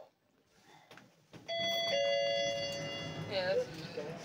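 Lift arrival chime: a two-note ding-dong, higher note then lower, about a second and a half in and ringing for nearly two seconds. A low hum starts just before it, and a short voice follows near the end.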